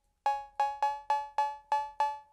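A claves percussion sample, pitched up in a sampler, triggered seven times in a row: short, bright, pitched knocks about three and a half a second, each dying away quickly.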